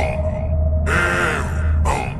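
Electronic dance music intro: a steady deep bass runs under sharp percussive hits at the start and near the end. About a second in, a short, processed vocal sound cuts in.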